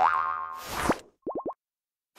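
Cartoon sound effects for an animated title logo: a ringing tone that fades within about half a second, then a fast upward zip, then three quick rising boing-like chirps.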